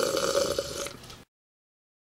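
Voiced drinking sound effect: a person slurping and gulping for a figure drinking from a mug, which stops abruptly a little over a second in.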